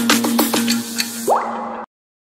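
Logo intro music: a held synth note under a quick run of falling, water-drop-like bloops, then a rising swoosh, before the sound cuts off suddenly near the end.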